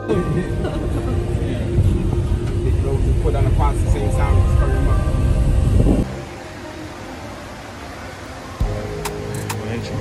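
Inside a moving passenger van: low road and engine rumble with people chatting. It stops abruptly about six seconds in, giving way to a quieter stretch of steady background music with a few clicks.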